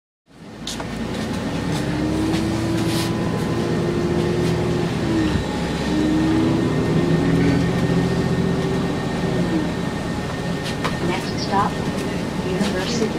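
Inside a moving city bus: steady engine and road rumble with a drawn-out whine that holds and shifts in pitch, starting suddenly just after the start. A few brief voices come in near the end.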